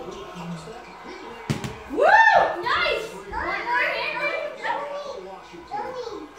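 A single sharp knock about a second and a half in, then a young child's voice: a high call that rises and falls, followed by more wordless excited chatter.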